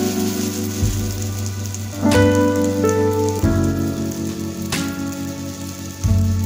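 Tel pitha batter deep-frying in hot oil, a steady sizzle. It plays under background music of sustained chords that change about every second and a half.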